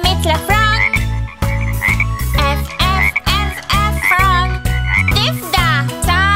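Children's song music with a steady bouncy beat, with cartoon frog croaks over it.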